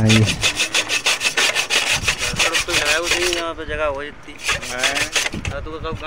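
A hacksaw cutting through an old blade bolt on a tractor rotavator, in fast, even back-and-forth strokes. The strokes pause briefly a little past the middle, then resume for about a second.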